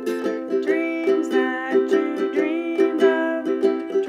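Ukulele strumming chords in a steady rhythm in a Hawaiian-style arrangement of a song, with a melody line on top that slides up into long held notes.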